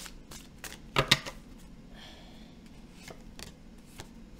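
A deck of tarot cards being shuffled and handled by hand: scattered crisp card clicks, with two sharp snaps about a second in that are the loudest sounds.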